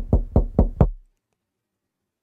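Knocking on a door: a quick, even run of knocks, about four a second, that stops about a second in.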